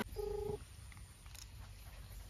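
A single short electronic telephone tone, a steady beep lasting under half a second, heard from a mobile phone during a call, followed by faint background noise.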